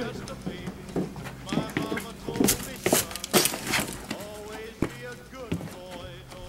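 Indistinct men's voices talking, with a few short, sharp noises in the middle.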